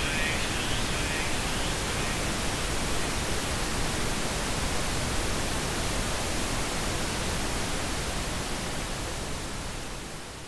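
Steady hiss of television static from an untuned TV, even across all pitches, easing down slightly near the end.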